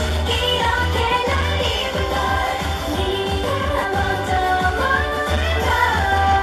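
K-pop girl group singing a pop song over a backing track with a heavy, steady bass, amplified through stage PA speakers.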